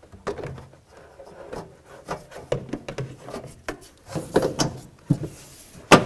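Plastic windshield cowl panel being slid and worked into place under the windshield, rubbing and scraping with scattered light clicks, louder scraping a little past the middle, and a sharp click just before the end.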